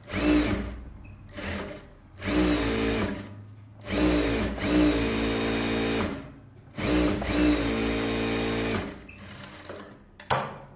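Industrial sewing machine stitching fabric in about five short runs with brief pauses between them. Each run starts with the motor's pitch climbing, then holds at a steady speed.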